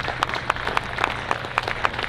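Audience applauding in scattered, irregular hand claps, several a second.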